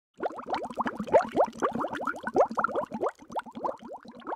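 Cartoon bubbling sound effect: a rapid stream of short rising bloops, several a second, thinning out near the end.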